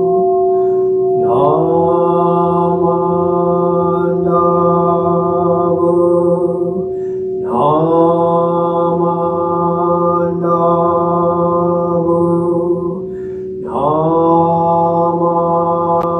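A man's voice chanting Jodo Shinshu sutra in three long, drawn-out held tones, each sliding up into the note, with short breaths between. A large temple bowl bell keeps ringing under the chant as one steady tone after its strike.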